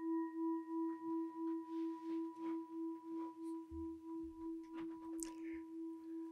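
A struck singing bowl rings on and slowly fades, its steady tone wavering in a regular pulse about three times a second. It sounds to open a meditation.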